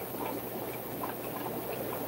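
Low steady background noise with a few faint light clicks.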